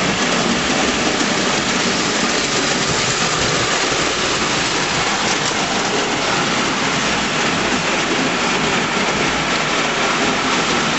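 Märklin gauge 1 tinplate locomotive running on tinplate track: a steady, dense rattle of wheels and motor.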